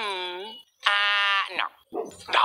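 A cartoon character's voice making two drawn-out hums. The first dips and then rises in pitch; the second is held on one steady, fairly high note.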